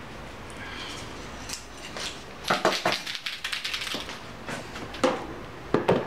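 Light clicking and rattling of small objects being handled, mostly in a cluster around the middle, with a couple more near the end.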